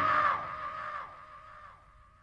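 The last held chord of a heavy metal song ringing out and fading away, a sustained high note trailing off with reverb and a few sliding notes dropping in pitch, down to near silence at the end.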